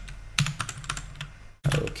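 Typing on a computer keyboard: a quick string of individual keystroke clicks.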